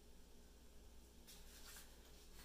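Near silence: room tone with a steady low hum, and a faint brief scrape or rustle about a second and a half in.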